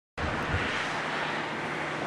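Steady outdoor background hiss with no distinct events, cutting in a moment after the start.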